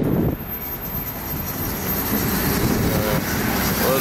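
DSB IC3 diesel multiple unit running in alongside the platform: a steady rumble of engines and wheels with a thin high whine held throughout.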